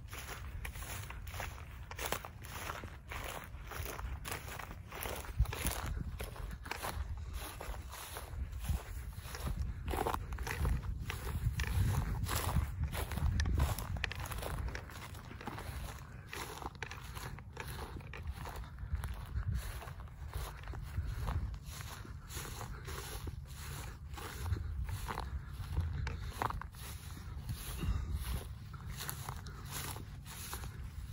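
Footsteps crunching through dry grass at a steady walking pace, about two steps a second, over a low rumble.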